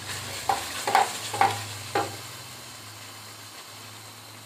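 Wooden spatula scraping and stirring thick milk-cake mixture (khoya cooked down with sugar and ghee) in a metal pot: four strokes about half a second apart in the first two seconds, then only a low steady hiss from the pot on the heat.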